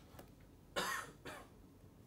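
A person's short cough about a second in, followed by a fainter second burst.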